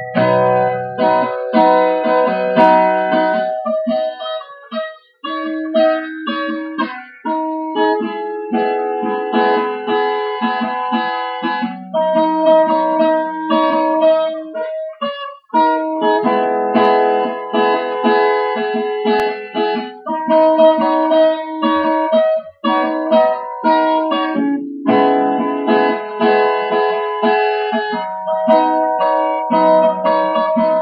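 Acoustic guitar played as a run of plucked and strummed chords, with short breaks between phrases about five, fifteen and twenty-two seconds in.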